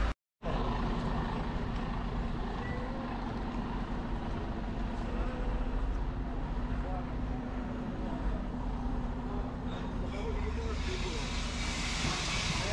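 Vehicle machinery running steadily in a recycling yard, with a forklift working the waste bales: a low, even hum under faint voices. Near the end a hiss builds up.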